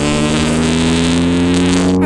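Hercules Wankel motorcycle's air-cooled single-rotor engine running under steady throttle, a smooth continuous tone whose pitch rises slowly as it pulls.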